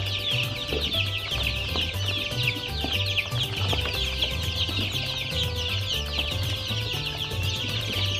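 A flock of young chicks peeping constantly, with many short falling peeps overlapping.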